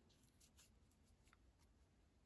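Near silence: room tone, with a few faint, brief rustles of a crocheted yarn motif being handled.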